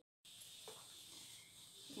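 Near silence: faint room tone following a brief total dropout at an edit, with one faint small click about two-thirds of a second in.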